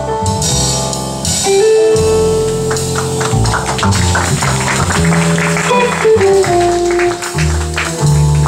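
Small jazz band playing live: a hollow-body electric guitar, upright bass, drum kit with cymbals and digital piano. Long held melody notes run over a moving bass line, with quick cymbal strokes through the middle.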